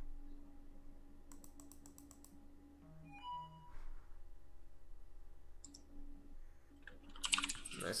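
Computer keyboard typing and clicking at a desk, mostly quiet. There is a quick run of keystrokes about a second in, a few scattered clicks after, and a louder burst of keystrokes near the end. A brief electronic tone sounds around three seconds in.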